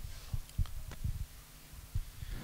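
Handling noise on a handheld microphone: several dull low thumps and a few small clicks as the microphone is picked up and gripped.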